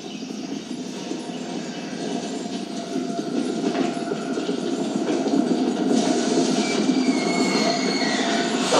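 Movie trailer soundtrack played through a TV: a dense, rumbling swell of score and sound effects that grows steadily louder, with high held tones coming in about six seconds in.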